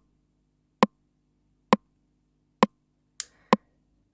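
Breadboarded analog recreation of the Roland TR-909 rimshot voice, triggered in a steady rhythm about once every 0.9 seconds: five short, sharp rimshot hits, each a quick ring that dies away at once. Its three bandpass filters ring at their centre frequencies, and the sound is dialed in close to the original 909 rimshot.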